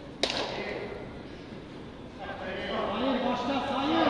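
A football kicked once with a sharp thud about a quarter-second in, echoing in a large covered hall. Faint distant voices of players follow in the second half.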